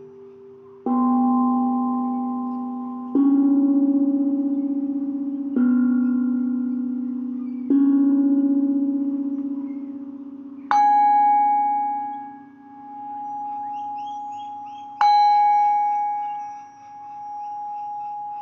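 Singing bowls struck with a mallet, six strikes a few seconds apart, each ringing on and slowly fading. The first four are lower-pitched; the last two, a little past halfway and about three-quarters of the way through, are a higher bowl whose tone swells and fades in a slow wavering pulse as it rings.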